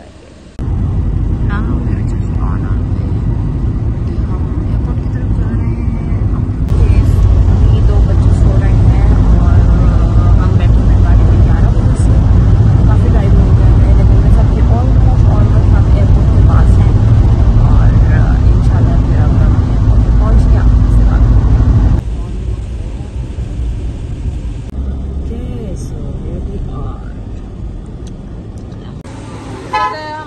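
Loud, steady low rumble of a moving vehicle heard inside the cabin, with a woman talking over it. It drops off sharply about two-thirds of the way through.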